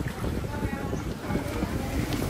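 Wind buffeting the microphone in uneven gusts, over water splashing from people swimming in a pool.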